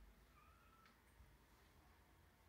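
Near silence: faint room tone, with one faint, short high tone lasting about half a second, a little way in.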